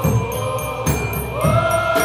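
Live rock band playing, with a steady drum beat about twice a second under long held chords that step up in pitch about one and a half seconds in.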